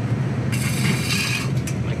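Pliers rubbing against the hub of a spinning refrigerated-case evaporator fan, a scraping hiss of about a second as the blade is braked to a stop. Under it is the steady low hum of the case's running fans.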